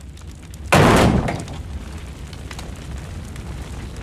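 Burning-barn fire effects in a cartoon soundtrack: a steady low rumble with faint scattered crackles, and one sudden loud crash less than a second in that dies away over about half a second.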